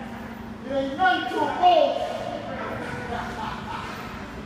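Indistinct voices, a few words spoken about a second in and softer talk after, over a faint steady hum.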